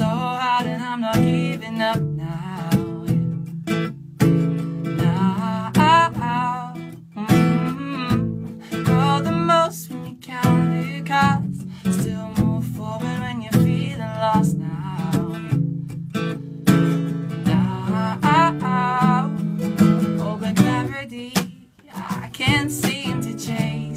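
Acoustic guitar strummed in a steady rhythm, with a man singing over it in phrases.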